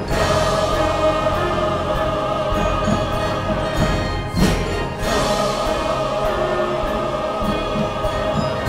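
Large mixed choir singing with an orchestra of strings and brass, in a steady, sustained passage.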